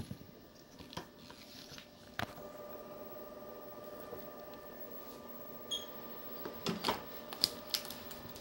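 Plastic clicks and knocks of a flexible endoscope being handled and its connector plugged into the light source unit, with a steady electrical hum from the equipment coming on about two seconds in. A cluster of sharper clicks follows near the end.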